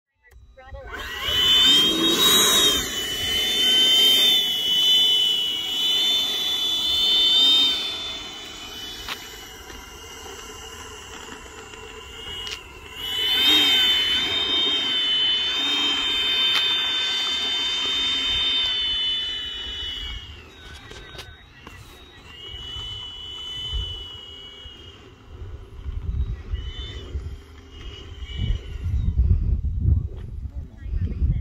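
80mm electric ducted fan of a Freewing Avanti S RC jet whining as it taxis, its high fan tone coming up and holding for two long throttle bursts of several seconds each, then shorter, fainter ones. A low rumble builds near the end.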